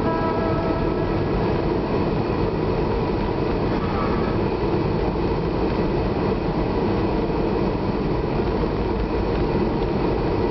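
Steady road and engine noise of a moving car heard from inside the cabin, with the tail of a piece of music fading out in the first second.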